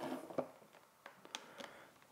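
Faint handling of an Ethernet cable and its plug on a tabletop: a few small clicks and light rustling, one about half a second in and two close together near a second and a half.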